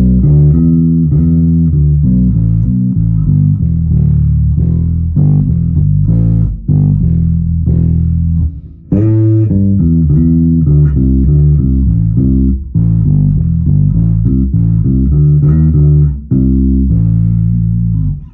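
MG Bass JB1 five-string neck-through bass with Bartolini pickups and preamp, played fingerstyle through a Demeter bass head and Ampeg cabinets, with the preamp's bass control turned all the way up and the mids boosted. A steady run of low, loud notes with a brief break about halfway through, stopping at the end.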